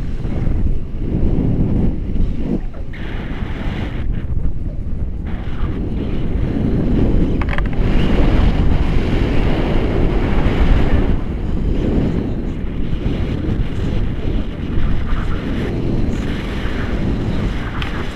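Wind buffeting the microphone of a camera held out on a selfie stick during a paraglider flight: a loud, steady low rush that rises and falls in strength.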